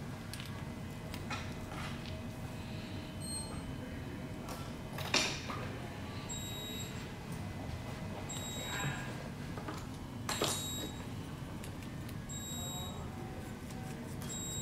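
Low, steady room noise with a few faint clicks and rustles of hands working hair and thread on a hook at a fly-tying vise. The sharpest click comes about five seconds in and another about ten seconds in.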